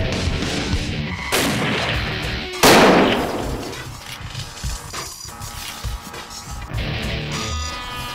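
Music with two loud gunshots just over a second apart, like rifle shots. The second shot is louder and rings out for over a second before fading back under the music.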